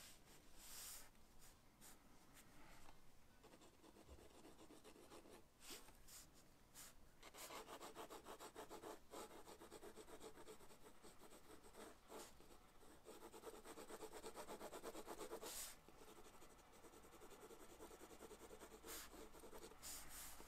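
Graphite pencil shading on sketchbook paper: faint scratching, with a few separate strokes, then a long run of quick back-and-forth hatching strokes through the middle, then a few separate strokes again.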